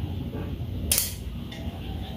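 Plastic hair claw clip being handled, with one sharp click about a second in.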